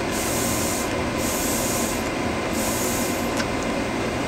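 E-cig atomizer being drawn on while it fires, the clear VG dripped onto it bubbling and sizzling as it heats in the coil, in repeated surges about a second long. This is the 'tail piping' clean, heating VG through the atomizer to flush out old residue.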